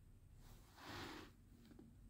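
Near silence: a faint soft rustle about a second in and a couple of faint light ticks near the end, from a hand turning an open folding knife.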